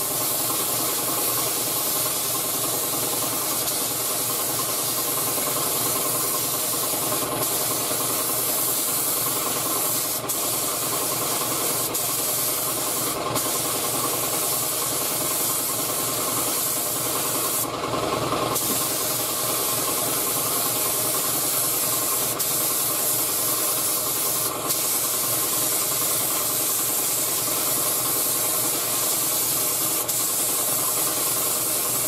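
3M Performance gravity-feed spray gun hissing steadily as clear coat is sprayed onto a bumper, over a steady machine hum, with a brief louder burst a little past halfway.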